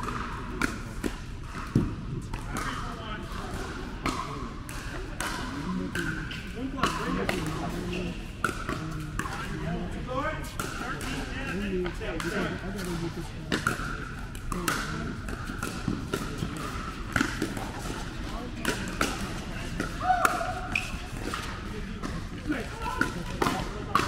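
Pickleball paddles striking a hard plastic ball: sharp pops at irregular intervals, the loudest about two seconds in and twice more in the last third, over continuous background voices.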